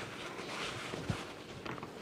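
Faint rustling of a paper towel being rolled tightly by hand on a plastic cutting board, with a soft knock about a second in.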